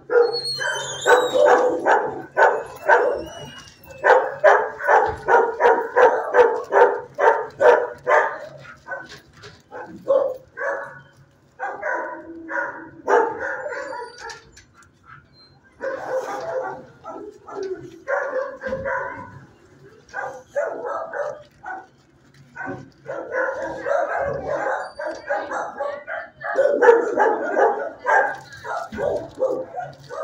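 Dogs barking in shelter kennels: fast runs of barks, several a second, broken by short lulls.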